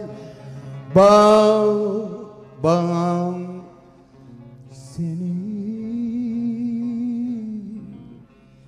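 Turkish folk singing: three phrases of long held, ornamented notes, each starting abruptly, the last and longest wavering in pitch.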